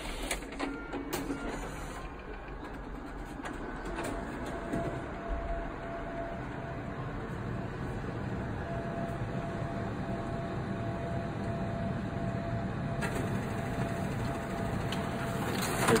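Toshiba multifunction copier running a copy job: the document feeder pulls the originals through while pages print, a steady mechanical whirr with a few clicks and a faint whine that comes and goes.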